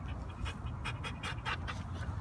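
A dog panting quickly and steadily, several short breaths a second.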